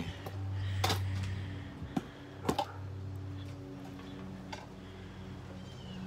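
A few sharp clicks and knocks, one about a second in and others at about two, two and a half and four and a half seconds, over a steady low hum.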